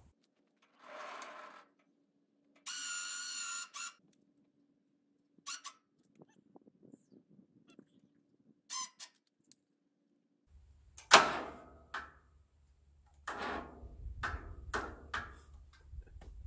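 The sawmill's small gas engine being cranked by its electric starter on a weak, dying lawnmower battery, with a few clicks and then slow, labouring cranking bursts about half a second apart near the end. The battery is too weak to start the engine.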